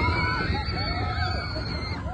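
Several riders screaming together on a mine-train roller coaster in motion, over the low rumble of the train.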